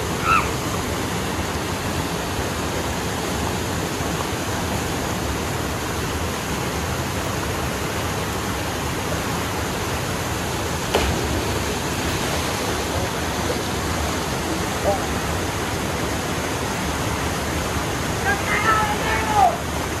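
Steady rushing of falling water from a waterfall into a river pool, with a few faint distant voices about 15 seconds in and near the end.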